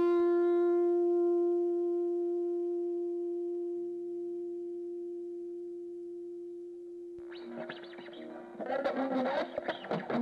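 Guitar music. A single held note rings on and slowly fades for about seven seconds. Then new guitar playing starts and grows fuller near the end.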